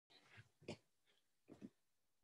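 Near silence: room tone with a few faint, brief sounds, one just under half a second in, one just under a second in, and a pair near the end.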